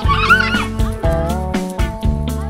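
Background music with a steady beat and held notes. Over its first half-second comes a brief wavering cry that rises and then falls.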